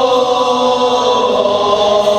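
Group of men singing together, unaccompanied, holding long sustained notes of an Islamic qasidah song. The rebana frame drums are not yet playing.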